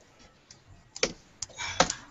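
Typing on a computer keyboard: a few scattered key clicks, then a quicker run of keystrokes near the end.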